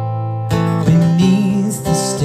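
Acoustic guitar strummed with a man singing: a held chord rings on, then a fresh strum comes about half a second in as the voice moves to a new note.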